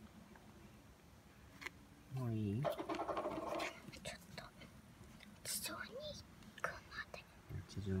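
A large brown cicada (aburazemi) caught in an insect net gives a short buzz for about a second, a couple of seconds in, as it moves its wings against the mesh. A brief low voice comes just before it, with soft rustles of the net afterwards.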